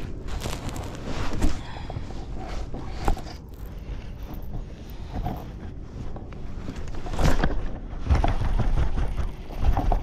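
Low rumble of wind buffeting a body-worn camera's microphone, with scattered knocks and rustles from the angler handling his baitcasting rod and gear in the kayak; the sharpest knock comes about seven seconds in.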